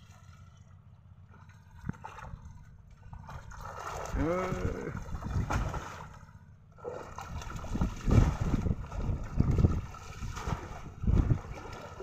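Water splashing and sloshing as a person wades through a shallow pond, in repeated heavy surges through the second half. A short shouted call about four seconds in.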